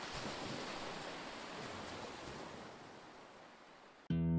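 Ocean surf: a steady wash of waves, slowly fading out.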